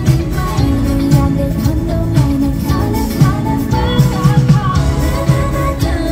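A T-pop girl-group song performed live in an arena: loud female vocals over a pop backing track with a steady beat.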